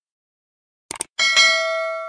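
Sound effect of a computer mouse clicking twice, then, just over a second in, a notification bell dinging once and ringing on as it slowly fades.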